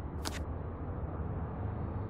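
A single short click-like swish about a quarter second in, as a hand takes a smartphone from a table, over a steady low hum.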